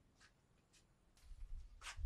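Near silence: faint background ambience with a few soft ticks and a brief hiss near the end.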